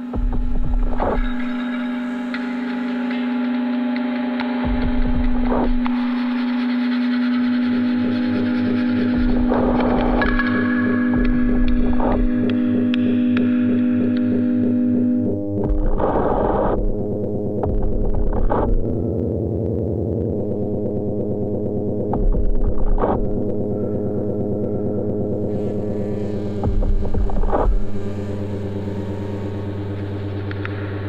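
Experimental drone music from sound sculptures, treated saxophones and laptop electronics: layered sustained tones with a gong-like metallic ring. A strong held low drone stops about halfway, and low soft thuds come every few seconds.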